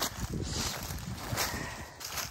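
Footsteps through dry fallen leaves and bare underbrush, with twigs and leaves rustling in an uneven run of small crunches.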